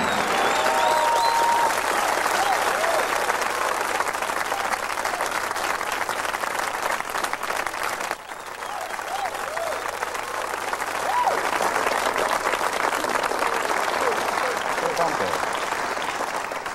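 Studio audience applauding, with scattered whoops and a whistle in the crowd. The applause dips briefly about halfway through and then picks up again.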